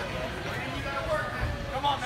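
Men's voices calling out and chatting in a gym, with a dull low thud about one and a half seconds in as a gymnast jumps up onto the parallel bars.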